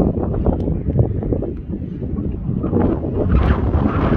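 Wind buffeting the microphone: a loud, gusty rumble that rises and falls.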